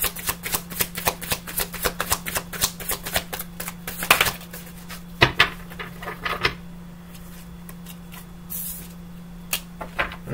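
A deck of tarot cards shuffled by hand: a quick even run of card clicks, about six or seven a second, for the first four seconds, then a few louder separate snaps of the cards up to about six and a half seconds in. A low steady hum lies underneath throughout.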